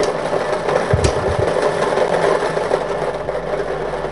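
Lottery ball-drawing machine running steadily, a continuous mechanical whir as the balls are mixed, with a brief low thump about a second in.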